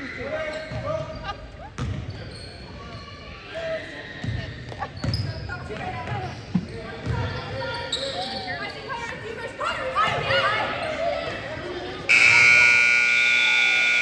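A basketball dribbled on a hardwood gym floor among players' calls, echoing in the gym; about twelve seconds in a loud, steady gym scoreboard buzzer sounds for about two seconds.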